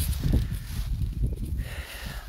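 Goats moving about close to the microphone at a wire fence: faint rustling and shuffling over a low, uneven rumble.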